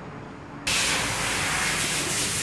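A steady hiss of rushing air starts suddenly about two thirds of a second in and holds evenly.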